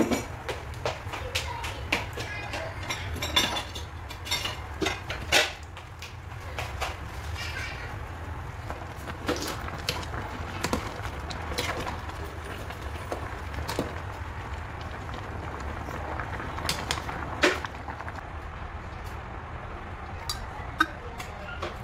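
A metal utensil clinking and knocking against an aluminium pot as spaghetti is stirred into boiling water, in short irregular clinks, the sharpest a few seconds in and again near the end, over a steady low hum.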